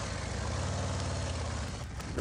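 Harley-Davidson Road Glide's V-twin engine running with a low, steady note as the motorcycle rolls slowly through city traffic.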